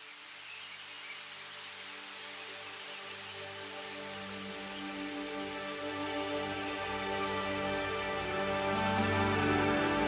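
Steady rain hissing, mixed with soft music of long held notes; the whole sound fades in gradually, growing louder throughout.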